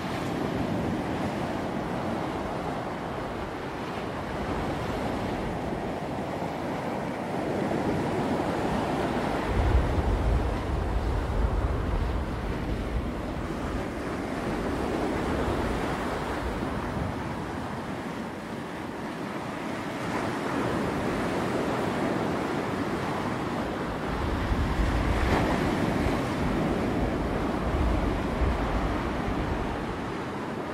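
Sea surf breaking and washing up the shore, swelling and easing with each set of waves. Wind gusts rumble on the microphone a few times.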